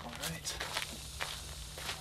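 Footsteps crunching on gravel: several irregular steps, each a short crisp crunch.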